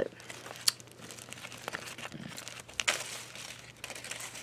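Zip-top plastic bag and foil candy wrapper crinkling on and off as they are handled, with a few sharper crackles, the clearest about a second in and again near the end.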